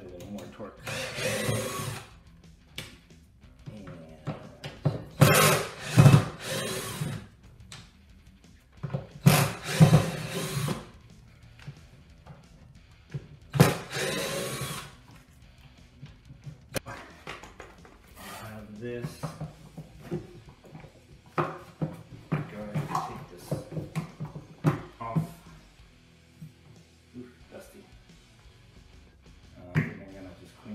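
Cordless drill with a Phillips bit, spinning in several short runs of a second or two as it backs screws out of a shop vac's motor housing. Lighter clicks and knocks of plastic parts being handled follow after about fifteen seconds.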